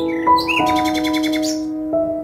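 Background music of held, sustained notes, with a bird's rapid chirping trill over it for about a second, starting shortly after the beginning.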